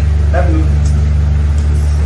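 A loud, steady low hum runs under everything without change, with a brief fragment of speech about half a second in.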